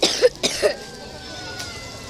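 A few short, loud vocal bursts from people in a crowd within the first second, then a quieter stretch of crowd background with a faint thin steady tone.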